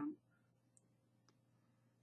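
Near silence with two faint computer-mouse clicks, about three-quarters of a second and a second and a quarter in.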